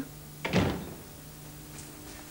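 A door shutting once with a single short thud about half a second in, a man arriving home.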